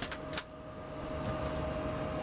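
Two sharp clicks in the first half second from the metal latches of galley carts being handled. Under them, the steady hum of the 747SP's cabin air and galley equipment, with a constant tone running through it.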